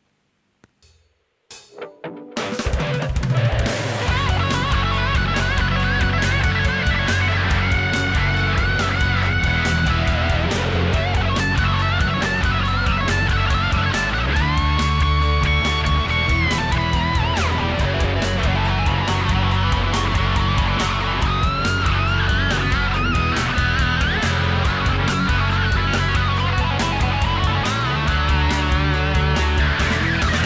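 ESP electric guitar playing fast F-sharp minor pentatonic lead licks over a jam track with drums, with bent notes and vibrato on held notes. The playing starts about two seconds in, after near silence.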